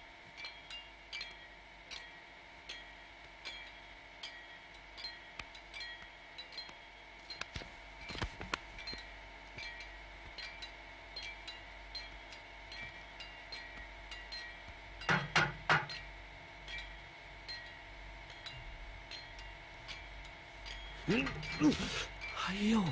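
Regular metallic clinks, about one every 0.7 s, over a steady ringing tone, typical of hammering on metal at a building site. A louder cluster of knocks comes about 15 seconds in, and a voice is heard near the end.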